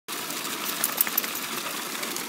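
A stream of water pouring from a pool hose and splashing onto grass: a steady rushing splash, with a few light clicks about a second in.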